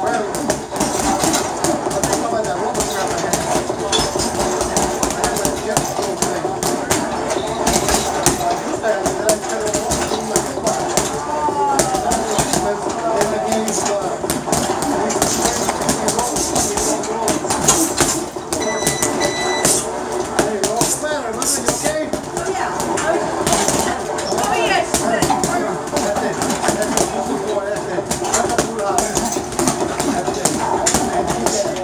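20 oz Ringside boxing gloves striking a hanging heavy bag in irregular thuds, over a steady background of voices and music.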